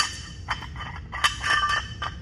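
Steel sleeve and bracket of a Kabuki Strength Transformer Bar clinking against each other as they are twisted to a new position: a sharp click at the start, then a few metallic clinks that ring briefly a little past halfway.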